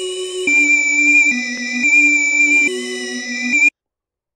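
A 90 bpm E-flat-minor music loop played from a held key in Logic Pro's Quick Sampler, set to alternate (ping-pong) looping so it plays forward and then back. It is sustained, synth-like chords that change every second or so, and it cuts off suddenly near the end.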